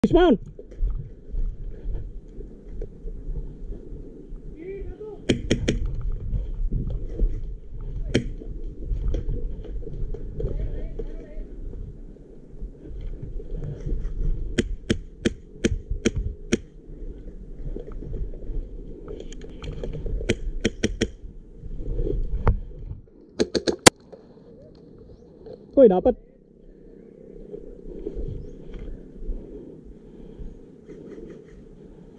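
Krytac MK18 airsoft rifle with a Wolverine HPA engine firing single shots as sharp cracks, in spaced groups, with a run of about six at roughly three a second near the middle and a loud single shot later, over a steady low rumble of movement. A falling swoosh transition effect opens it.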